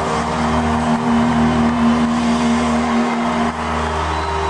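Live rock band holding a sustained chord at the close of a song, one steady note loudest over a low drone, with the crowd cheering.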